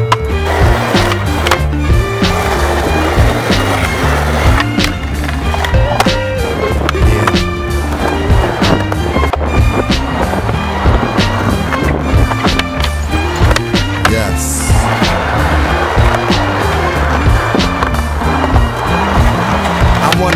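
Skateboard wheels rolling on smooth concrete, with repeated tail pops, board clacks and landings from flatground tricks, mixed with a hip-hop backing track that has a steady beat and deep bass.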